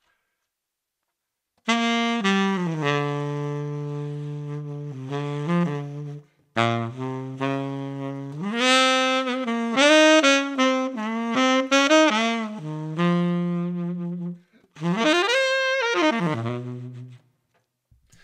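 Unaccompanied tenor saxophone playing a slow jazz ballad melody in three phrases of long held notes, some scooped up into from below, with the time pushed and pulled freely. It comes in about two seconds in.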